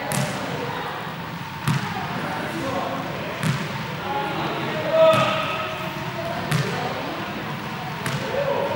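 A ball hitting a sports-hall floor five times, about every second and a half. Each impact is sharp and echoes in the hall, over a background murmur of voices.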